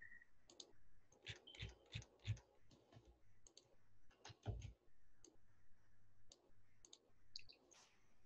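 Faint, scattered clicks of a computer mouse and keyboard, with a few soft thumps about two and four and a half seconds in.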